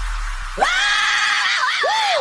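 Break in an electronic dance track: a hissing sweep over a low bass drone, then a high scream-like wail that rises, holds, wavers briefly and falls away.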